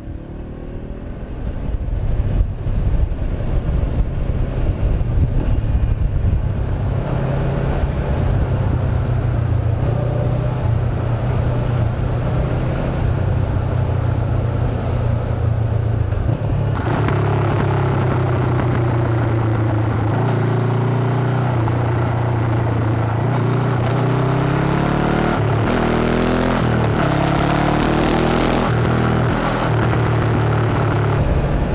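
A 2013 Honda CB500X's parallel-twin engine, fitted with a Staintune exhaust, running under way at road speed with road and wind noise. It picks up over the first couple of seconds, holds a steady note, then rises in pitch several times near the end as the bike accelerates through the gears.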